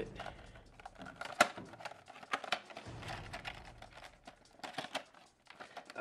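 Plastic-and-cardboard retail box of an Otterbox Commuter phone case being opened by hand: a run of irregular clicks and snaps from the plastic and card, the sharpest about a second and a half in.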